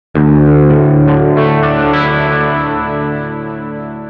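A distorted electric guitar chord struck once and left ringing, with a few quick accents in the first two seconds, then slowly fading.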